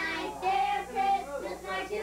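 Children and women singing together without accompaniment, with held sung notes.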